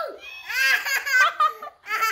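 A young child laughing: a quick run of high-pitched laughs starting about half a second in and lasting about a second.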